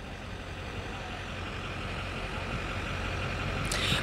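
Outdoor background of distant vehicle traffic: a steady low rumble that slowly grows louder, with a brief hiss just before the end.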